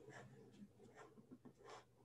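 Near silence with a few faint, scattered clicks from working a computer.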